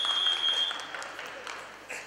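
A referee's whistle blown once: a single steady high note that stops about a second in. Crowd applause and noise from the arena run underneath.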